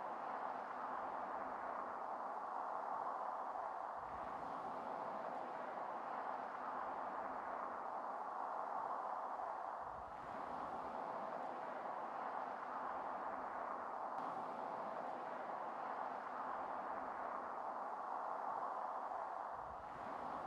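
Faint, steady ambient drone with a soft hiss in the middle range, dipping briefly about halfway through.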